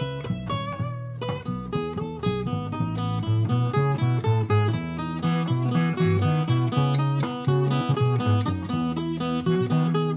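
Acoustic guitar fingerpicked over a plucked electric cello, playing a quick instrumental passage with busy low bass notes underneath.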